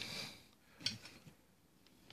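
A quiet room with one faint short click just under a second in, followed by a couple of softer ticks.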